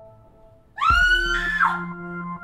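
A sudden high-pitched scream, just under a second long, rising and then dropping in pitch, with a low thud at its start, over ambient synth music.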